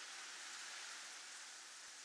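Faint steady hiss with no music.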